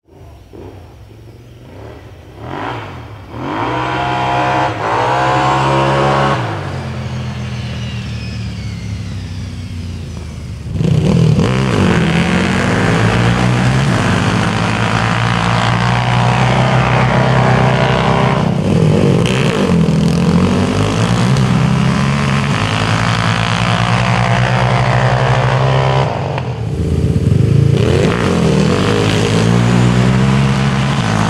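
Sport ATVs (quads) drag racing up a sand hill, their engines revving hard at full throttle with the pitch rising through the gears. The sound builds a few seconds in, swells about eleven seconds in and stays loud, with a brief dip near the end.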